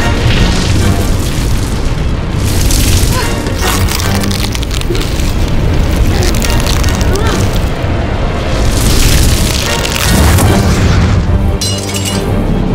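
Dramatic film score layered with heavy booming sound-effect hits. It stays loud throughout, with several surges of rushing noise over a steady low rumble.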